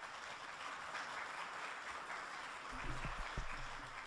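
Audience applauding steadily, tapering off near the end, with a few low thumps about three seconds in.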